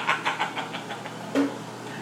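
A man laughing in a quick run of short "ha" pulses that fade out, followed by a brief vocal sound about a second and a half in.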